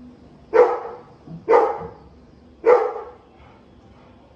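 A dog barking three times, each bark short and loud, about a second apart.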